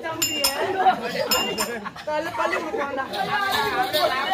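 Performers' voices in spoken dialogue, with about four sharp metallic clinks that ring briefly in the first two seconds.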